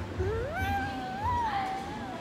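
A toddler's long, high-pitched vocal sound, one drawn-out call that climbs in pitch, holds, and sinks again near the end.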